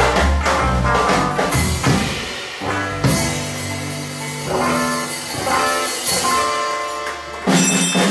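Live blues band playing an instrumental passage: electric guitars over a drum kit keeping a steady beat.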